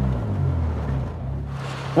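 Dacia Logan rally car's engine running at low revs, its pitch rising a little just after the start, then changing near the end.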